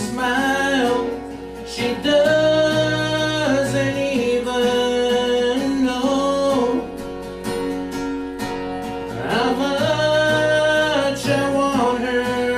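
A man singing solo with a strummed acoustic guitar, his voice sliding up into long held notes.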